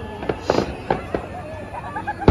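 Aerial fireworks going off: a few sharp pops and crackles in the first second or so, the strongest about half a second in.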